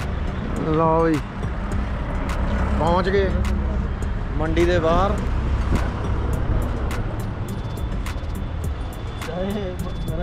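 A steady low vehicle engine rumble of roadside traffic, with brief snatches of men's voices a few times.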